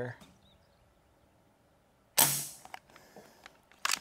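A single shot from a .22 Umarex air rifle about two seconds in: a sharp crack that dies away within half a second, followed by a few faint clicks.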